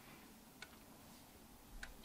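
Near silence: faint room tone with two faint, short clicks, one about half a second in and one near the end.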